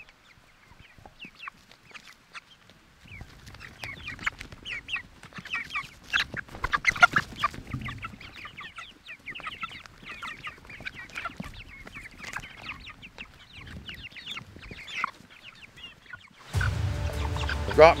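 A flock of young chickens, about a month and a half old, clucking and peeping in short, scattered calls. Near the end it cuts suddenly to music and a man's voice.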